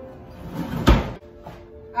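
A kitchen drawer pushed shut, closing with one heavy thunk about a second in.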